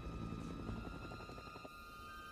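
Low, steady rumbling drone with a thin held high tone above it: a tense film-score and ambience bed.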